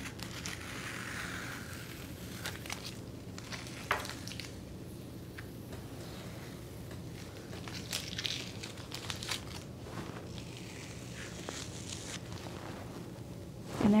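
Tape being peeled off the edges of watercolor paper: faint, intermittent ripping strokes with small clicks and rustles between them.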